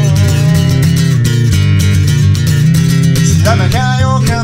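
Steel-string acoustic guitar, capoed at the third fret, played with a thumbpick: a steady run of picked and strummed chords.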